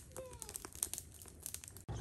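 Faint, scattered clicks and light clatter of shellfish shells knocking together as they are handled and washed by hand in a basin.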